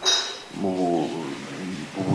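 A man's voice through a microphone: a short hiss-like consonant, then one drawn-out syllable about half a second long, in a pause between phrases.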